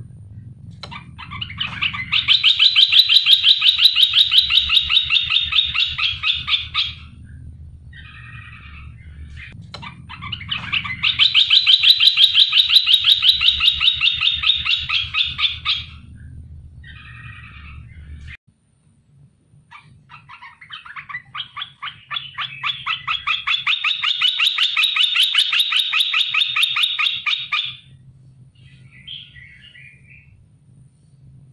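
Olive-winged bulbul (merbah belukar) calling in three long phrases of fast, pulsing chatter, each lasting about five seconds, with short notes between them.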